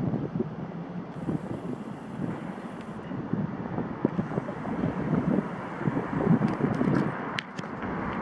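Outdoor street ambience: wind rumbling on a handheld camera's microphone over the noise of street traffic, with a few sharp clicks near the end.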